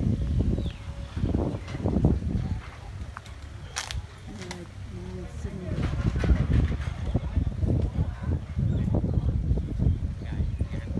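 Indistinct voices of people talking close by, over a low rumble, with one sharp click about four seconds in.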